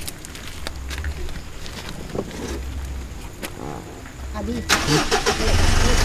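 An SUV's engine idling with a low, steady rumble, with scattered clicks and knocks and brief murmured voices as people climb in. It ends in a loud whoosh transition effect that builds over the last second and a half and cuts off abruptly.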